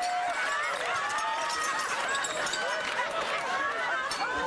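Many voices at once, the sitcom's studio audience laughing and calling out together, with overlapping high exclamations throughout.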